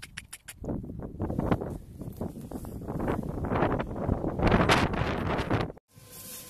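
Muscovy ducks giving breathy, hissing calls close to the microphone, in irregular bursts that grow louder in the second half, with wind buffeting the microphone. The sound cuts off suddenly just before the end.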